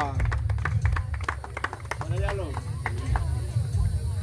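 Voices of an onlooking crowd, with many short sharp claps or clicks in the first half and a steady low rumble underneath.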